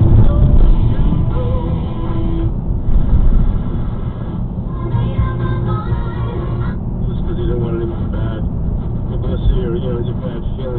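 Car radio playing music with a voice mixed in, heard inside a moving car's cabin over a steady low road and engine rumble.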